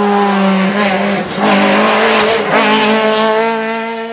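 Peugeot 208 R2B rally car's 1.6-litre four-cylinder engine running hard at high revs as the car passes. The note dips briefly twice, about a second and a half and two and a half seconds in, and fades away near the end.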